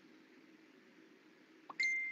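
Near silence with faint hiss, then near the end a click and a steady high-pitched beep begins.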